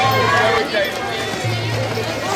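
Bagpipe music playing, its low drone dropping in and out, with people's voices calling over it.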